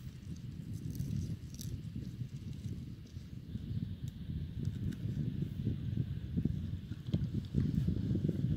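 Wind buffeting the microphone as a low, uneven rumble, with soft thuds of horses' hooves in loose sand as two horses walk closer, the sound growing louder near the end.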